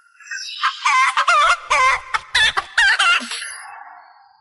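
Chicken clucks pitched into a tune: a quick run of short clucking notes that ends in a fading tail near the end.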